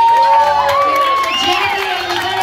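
Small audience cheering at the end of a karaoke song, several voices calling out at once with rising and falling shouts.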